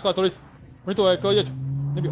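A man talking, ending in a drawn-out, steady low voiced sound, a held hesitation hum, that starts just past the middle and rises slightly in pitch.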